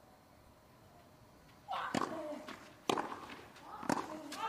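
Tennis ball struck by rackets three times, about a second apart, as a serve and rally begin on a clay court, with a brief voice sound around the first hits. Before that, a hushed stadium.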